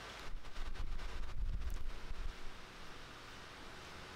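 Soft rustling and handling noise from a hand screwing the steering-stem head cap onto a Honda CBX's steering stem, lasting about two seconds.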